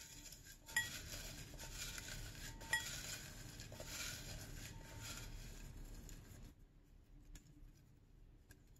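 A hand stirring through folded paper slips in a cut-crystal glass bowl: a quiet, steady rustle of paper, with two light clinks against the glass. It dies down after about six and a half seconds.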